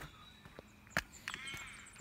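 Quiet outdoor ambience with a single footstep on gravel about a second in, then a faint, drawn-out animal call with a rising level over the last half-second.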